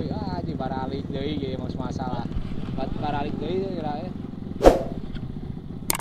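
Dirt bike engines idling steadily under people talking. There is one sharp, loud thump about three-quarters of the way through and a couple of small clicks near the end.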